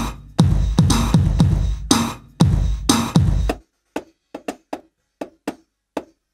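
A drum beat, two to three hits a second, with a deep bass thump under each hit. It stops about three and a half seconds in. After that come only a few short, light, dry hits, spaced unevenly.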